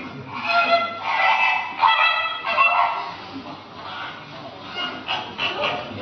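A recording of a goose honking, played over loudspeakers as a guess-the-sound quiz clue: a run of short nasal honks in the first three seconds, quieter for a while, then a few more near the end.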